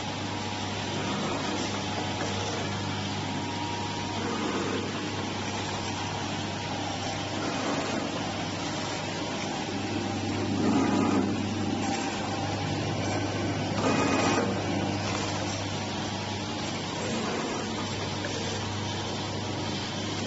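Vertical form-fill-seal powder packing machine running steadily as it forms, fills and seals small pillow sachets: continuous mechanical running noise over a low steady hum, with two louder moments around the middle.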